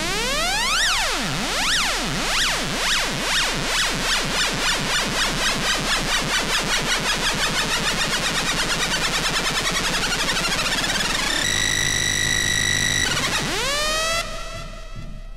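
Electronic dance music build-up: a synthesizer tone sweeping up and down in pitch, the sweeps speeding up until they blur into a fast warble, then a held high tone for about a second and a half, and a rising glide into the next section near the end.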